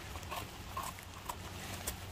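A small knife scraping soil off the stem base of a porcini mushroom: a few faint, scratchy scrapes about half a second apart.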